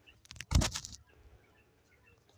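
Handling noise as the phone is set down: a few light clicks, then a short rustling thump about half a second in.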